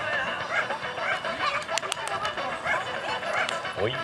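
Background chatter from spectators mixed with short barks and yips from dogs, with a few sharp clicks.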